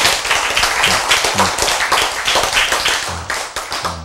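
A small audience applauding: fast, dense clapping that thins out and dies away near the end.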